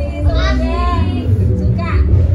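A child singing into a microphone over loud backing music with a heavy bass.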